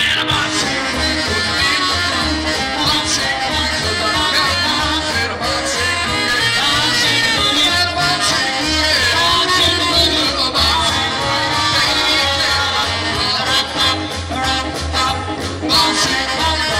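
Live rock and roll band playing an upbeat number: a vocal group singing over electric guitar and drums, with a steady beat.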